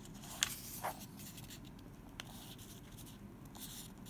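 A sheet of paper being folded and creased by hand: a few short crisp paper sounds in the first half, then light rustling.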